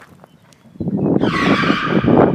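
A loud, shrill screech starting just over a second in, over a rough rumbling noise.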